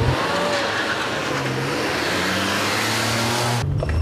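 Car engine revving and accelerating, with a loud rushing noise that starts abruptly and cuts off suddenly after about three and a half seconds.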